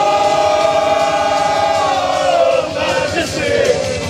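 A crowd singing along to a karaoke backing track. They hold one long note for about two seconds, then go on with the melody.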